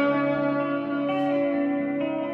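Fano Omnis JM6 electric guitar through a Fender Princeton amplifier: several sustained notes ringing over one another, with a new higher note added about a second in.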